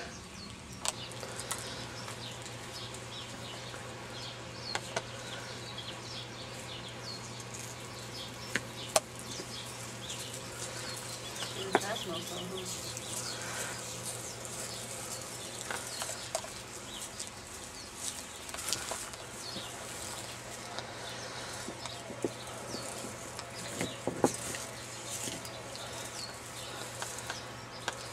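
Outdoor yard ambience: small birds chirping on and off, over a steady low hum that starts about a second in. A few light clicks and rustles are scattered through it.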